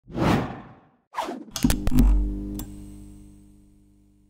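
Animated logo intro sting: two quick whooshes, then a cluster of sharp hits with a deep boom about a second and a half in, leaving a ringing chord that slowly fades away.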